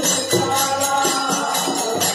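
Varkari bhajan: a group of men chanting in chorus to an even beat of clashing hand cymbals (taal), about three strikes a second, with strokes on a two-headed barrel drum (mridang).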